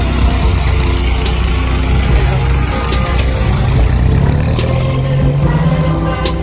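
A passenger jeepney's engine running as it drives past, its pitch rising over the last few seconds as it speeds up.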